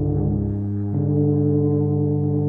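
Three tubas holding a sustained low microtonal chord, the close tones beating against each other. About half a second in the lowest note drops away, and a moment later the chord moves to new pitches and holds.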